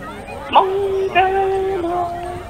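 A single voice singing Hmong kwv txhiaj (chanted sung poetry). It comes in about half a second in with a rising slide, then holds long, steady notes and drops a step in pitch near the end.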